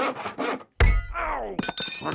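Repair sound effects: a few quick rasping, saw-like strokes, then a loud thud followed by a falling tone, and a couple of sharp clicks with brief ringing tones near the end.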